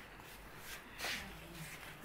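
Faint rustling of blankets and clothes, with soft swishes at about the middle of the stretch.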